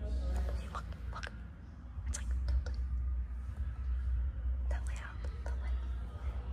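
Soft whispered talk over a steady low hum, with a few sharp clicks and knocks scattered through.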